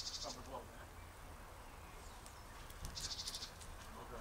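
A brief whine from a Central Asian Shepherd (alabai) puppy near the start, over a quiet garden background. Two short, fast, high-pitched trills come once at the start and again about three seconds in.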